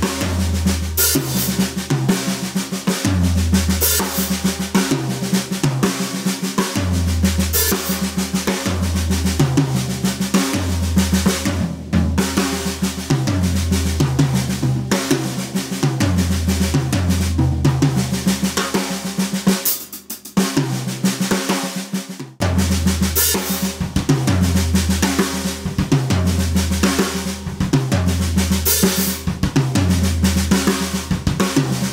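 Drum kit played with sticks: six-stroke roll figures in sextuplets on the snare and toms, with bass-drum kicks standing in for the doubles. Dense continuous strokes over regular kick thumps, broken by two brief gaps about twenty seconds in.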